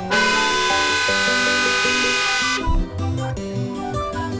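Car horn sounding in one long blast of about two and a half seconds, over background music.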